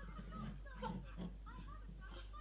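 Faint voices of a children's cartoon playing through a tablet's small speaker.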